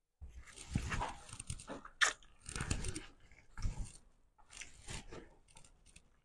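Close-miked wet chewing and lip-smacking of a mouthful of rice mixed with salmon soup, coming in irregular bursts with short pauses between them.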